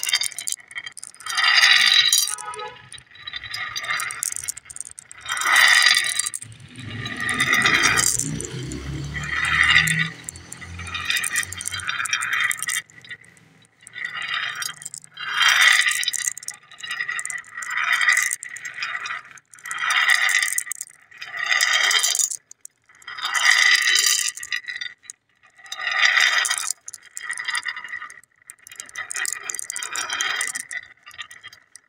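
Glass marbles clattering and clinking on a sheet of tinted glass and against each other, in repeated rattling bursts about every two seconds with a bright ringing clink. A low rumble runs under the clatter for a few seconds about a quarter of the way in.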